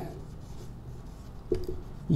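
Marker pen writing on a whiteboard: faint scratching strokes, with one brief louder sound about one and a half seconds in.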